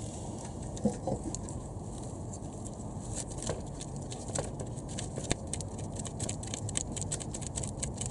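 Small irregular metal clicks and ticks of bolts and a tool being handled as the catalytic converter's mounting bolts are fitted by hand, growing denser in the second half.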